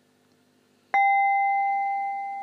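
A struck metal sound-therapy chime, hit once about a second in, giving a clear bell-like tone that rings on and slowly fades.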